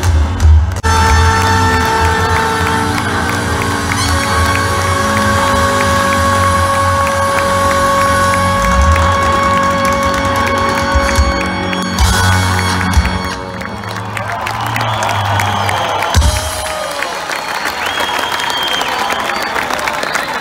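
Live band playing loud amplified music with long held notes over heavy bass, the crowd cheering along; near the end the bass drops out and crowd cheering and applause take over.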